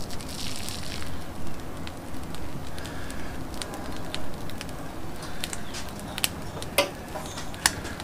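A raw brisket being lifted off a wooden cutting board and laid on the grate of a charcoal kettle grill: soft scattered clicks and crackles over a low steady hiss, with a brief brighter rustle about half a second in.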